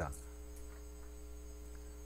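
Steady, faint electrical mains hum, a low buzz with several steady higher tones above it that do not change.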